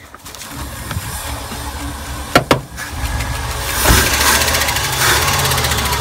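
Ford 460 V8 of a 1978 Ford Chateau van idling just after its first start in 12 years, a steady low rumble that gets louder about four seconds in. Two short sharp clicks come in the middle.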